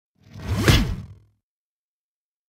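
A single whoosh sound effect, about a second long, swelling up and dying away, with a rising and a falling pitch sweep crossing at its loudest point.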